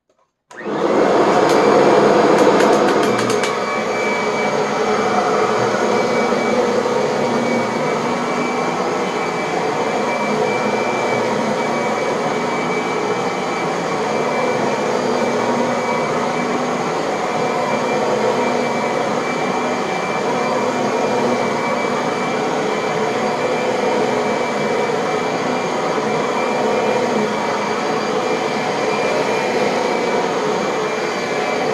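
Upright vacuum cleaner with a beater-bar head switched on about half a second in, loudest for the first few seconds with a brief rattle, then running steadily with a constant whine as it is pushed back and forth over carpet, picking up test sand.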